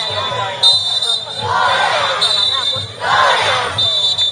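Yagura float parade: shrill whistle blasts sound in short on-off bursts while the running rope pullers shout in chorus, over regular low drumbeats.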